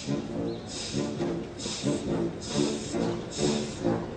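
Wind orchestra playing a train-imitating piece: short repeated chords in a steady chugging rhythm, with a hissing burst about once a second like a steam locomotive's chuff.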